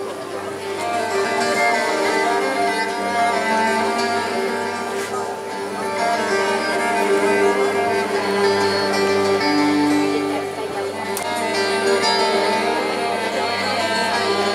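Live instrumental music from a band: acoustic guitar and cello play together, backed by a bass guitar, in an acoustic, classical and Latin-Andean style.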